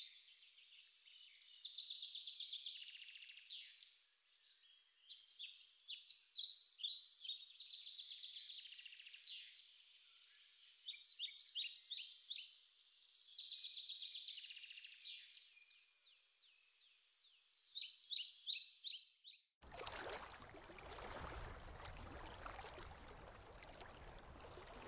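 Birdsong: small birds chirping and trilling in quick repeated phrases, cut off abruptly about twenty seconds in and replaced by a steady rushing noise.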